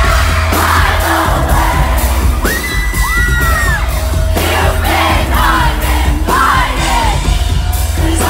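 Live pop concert music heard loud from within the crowd: heavy bass and a steady beat, with a singer's voice and the crowd singing and yelling along. A smooth, high gliding tone rises and falls about a third of the way in.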